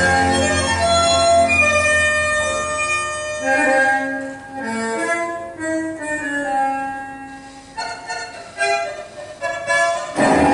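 Argentine tango orchestra music with bandoneon and strings, playing sustained, held notes. Through the second half it drops to a softer passage of separate drawn-out notes.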